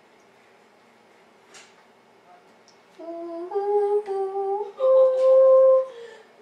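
A person humming a short tune halfway through: a few steady notes stepping upward, the last held for about a second. A faint tap comes earlier, in the quiet before it.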